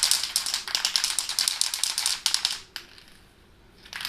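An aerosol spray paint can being shaken hard, its mixing ball rattling rapidly inside. The rattling stops a little under three seconds in.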